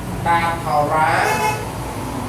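A man lecturing in Khmer, over a steady low hum.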